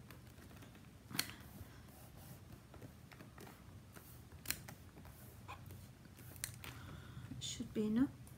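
Hands pressing and rubbing on a stamping platform to print a large crackle-pattern rubber stamp onto card, with a few soft clicks and taps. Near the end the stamp plate is lifted away from the card, and a brief voice sound follows.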